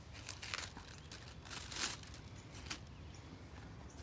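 Plastic grafting film crinkling and rustling in the hands as a strip is cut and handled for wrapping a graft, a few short faint crinkles with the loudest about halfway through.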